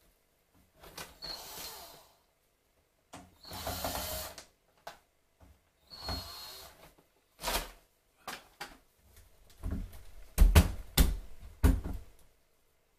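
Interior door being worked off its hinges by hand: three scraping, rubbing passes of about a second each, then a run of knocks and thumps as the door panel bumps in its frame, the loudest near the end.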